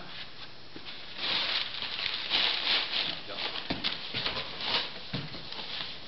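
A cardboard box being closed and sealed: flaps folded down and packing tape pulled off the roll and pressed across the top. It makes a dry rasping noise for a few seconds, with a few sharp knocks.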